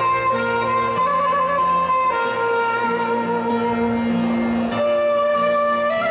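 Soprano saxophone playing a slow melody of long held notes, changing pitch every second or two, over electronic keyboard accompaniment.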